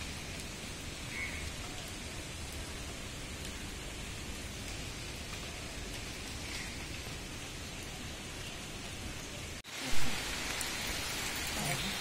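Steady hiss of rain falling, broken about ten seconds in by a brief cut-out and a short, sharp knock.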